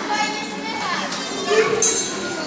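Several children's voices chattering and calling out over one another, with a brief high-pitched sound near the end.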